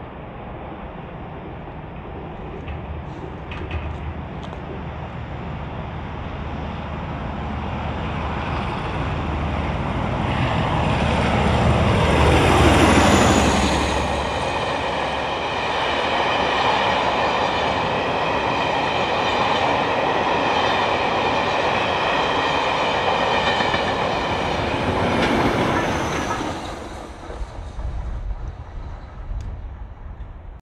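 Class 47 diesel locomotive 47828 approaching and passing at speed, its Sulzer engine growing louder to a peak with a falling pitch about 13 seconds in. A long rake of coaches follows, rolling past with steady wheel-on-rail clatter and a high ringing, until the sound drops away near the end.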